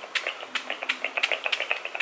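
Pump spray bottle of face mist being spritzed at the face, a quick run of short, sharp spritzes at about seven a second.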